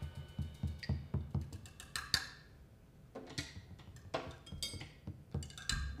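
Sparse free-improvised jazz percussion on a drum kit: scattered light hits at an irregular pace, a few cymbal strokes, and low thuds beneath, played quietly.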